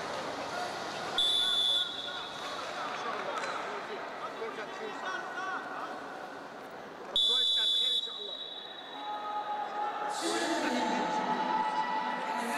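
Referee's whistle blown twice, two short high blasts about six seconds apart, over a steady murmur of voices in the hall. From about ten seconds in, voices are shouting.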